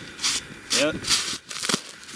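Short bursts of crunching and rustling as a gloved hand digs at snow-covered debris, with a sharp click near the end, and a man's brief spoken "yep".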